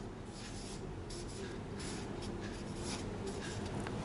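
Marker pen writing a word on chart paper: a run of faint, short strokes.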